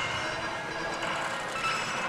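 Steady din of a pachislot parlour: many slot machines' sound effects and music blending into a dense, even wash with faint steady tones.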